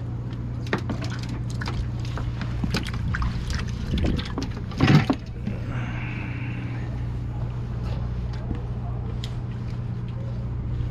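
Clicks and knocks of a herring jig rig and line being handled on a wooden dock, with a louder thump about five seconds in, over a steady low hum. A short watery hiss follows as the rig is lowered back into the water.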